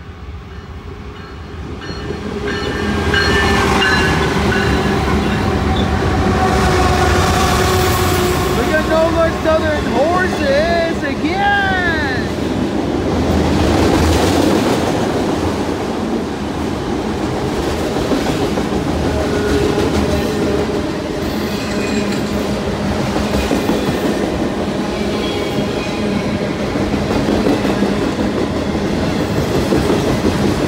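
BNSF GE ES44DC diesel-electric locomotive leading a freight train past at close range, growing louder over the first three seconds. After that the train's cars, autoracks among them, roll by steadily and loudly.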